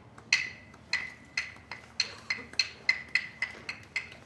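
Hyoshigi wooden clappers struck in a series of sharp, ringing clacks that come faster and faster. There are about eleven strikes, from roughly one every half second to about four a second near the end.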